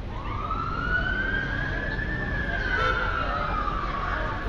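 An emergency vehicle's siren wailing: one slow rise in pitch over about two seconds, then a slow fall, over the steady rumble of city traffic.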